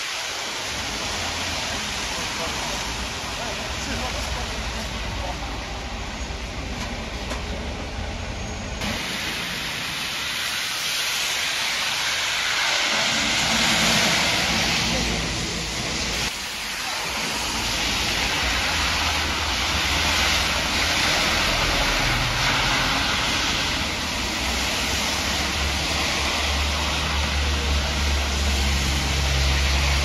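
Road traffic on a rain-soaked street: a steady hiss of tyres on wet tarmac and rain, with the low rumble of passing coach, bus and car engines, loudest near the end.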